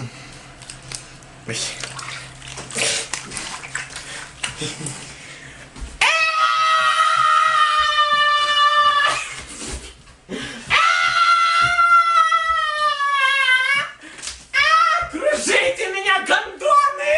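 Water sloshing and rubber rustling as water-filled condoms are handled and swung, then a man lets out two long high-pitched cries, the first held level for about three seconds, the second sliding down in pitch, followed by short yelps near the end.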